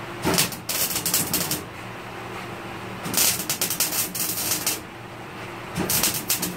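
Arc welder crackling as bracing is tacked onto the steel body of a 1940 Ford. There are two bursts of rapid crackling, each about a second and a half, one just after the start and one about three seconds in, over a faint steady hum.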